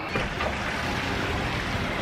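Steady rushing wind noise on a handheld camera's microphone.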